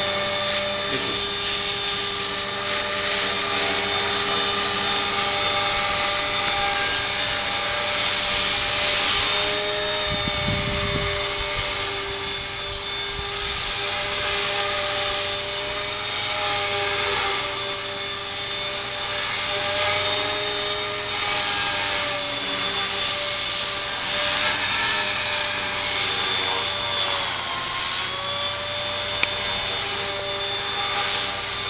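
Align T-Rex 450 SE V2 radio-controlled helicopter in flight: the steady whine of its electric motor and spinning rotor, with the pitch dipping and recovering slightly as it manoeuvres.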